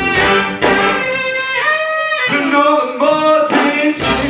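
Live funk big band playing with a tenor saxophone out front. About a second in, the band drops out and a lone lead line holds and bends long notes, then the full band comes back in near the end.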